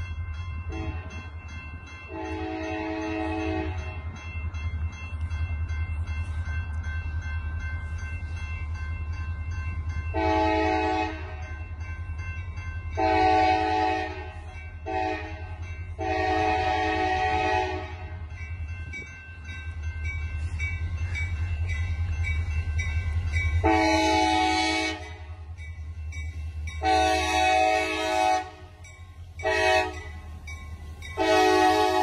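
CSX diesel locomotive's multi-chime air horn sounding several blasts in the long, long, short, long grade-crossing signal as the train approaches, over the steady low rumble of its diesel engine.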